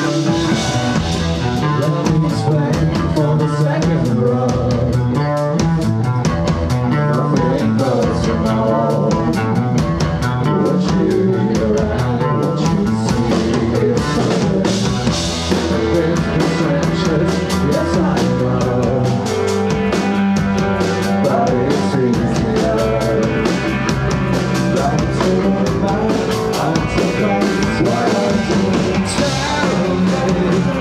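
An indie rock band playing live at full volume: electric guitars and a drum kit with a steady beat, and a male voice singing into a microphone.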